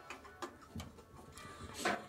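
A few faint, short clicks and light handling sounds as a wire is fitted by hand against a motorcycle engine's metal side case.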